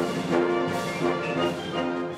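Full orchestra of strings and brass playing held chords together, moving to a new chord every second or so.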